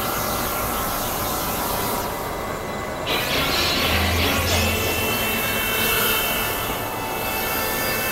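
Experimental electronic noise music: a dense, loud wash of synthesizer noise and drones. About two seconds in, the highs drop out for about a second, then come back with a low hum and a thin held high tone.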